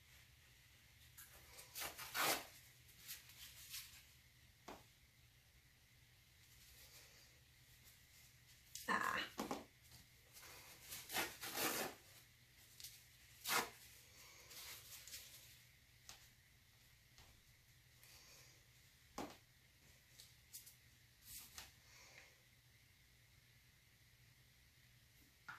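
Faint, scattered rustles and light taps of nitrile-gloved hands handling a paint panel and paper towel, in short clusters with quiet between.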